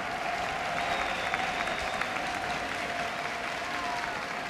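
Audience applauding, the clapping swelling just before and holding steady throughout.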